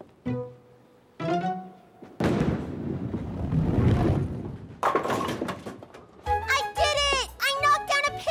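A bowling ball rolls down a wooden lane, a steady rumble lasting about two and a half seconds, and then a burst of pin clatter. A short music cue with sliding notes follows near the end.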